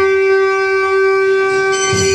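A wind instrument holding one long, steady note without a break.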